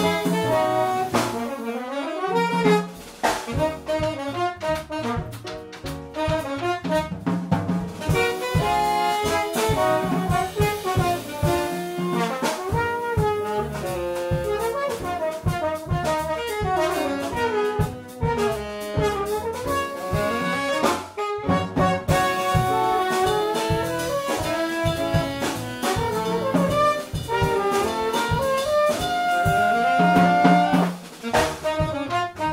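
Live small-group jazz: alto saxophone and trombone playing a melody line together over upright bass and a drum kit keeping time.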